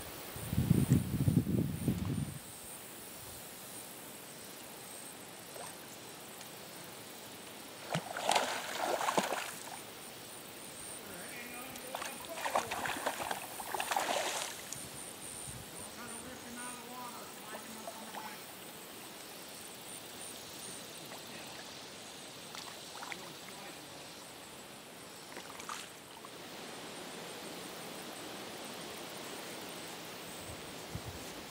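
Water sloshing and splashing in short bursts, about eight seconds in and again from twelve to fourteen seconds, from a hooked catfish being played at the pond's surface, over a faint steady outdoor background. A low muffled rumble fills the first two seconds.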